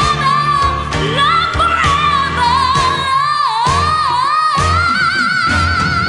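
A female pop-soul singer holds a long, high sung note, around F5, with a wavering vibrato that climbs slightly near the end, over a pop band backing with bass and drums.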